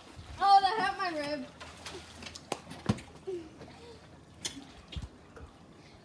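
A child's high-pitched voice calls out for about a second near the start, then a quiet stretch of faint pool-water sound broken by a few sharp clicks.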